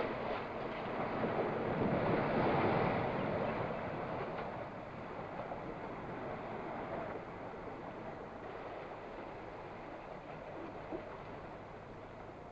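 Sea waves washing and surging, a rushing noise that swells a couple of seconds in and then slowly fades away.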